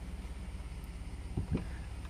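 Ford F-150 pickup engine idling, a steady low hum with a faint even pulse heard from inside the cab.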